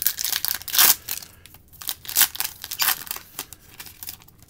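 Foil wrapper of a Bowman Chrome trading card pack being torn open and crinkled by hand, in a run of irregular crackles, loudest just before a second in.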